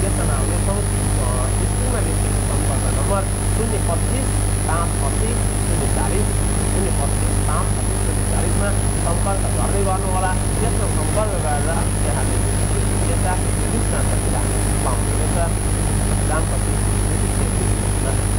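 A steady, loud low hum that does not change, with a man's voice talking faintly underneath it and a constant high-pitched whine.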